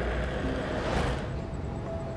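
A rush of noise that swells to a peak about a second in and then drops away quickly, over a low steady rumble.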